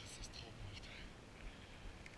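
Skis sliding over packed, tracked snow with short hissing scrapes of the edges, over a low wind rumble on the microphone.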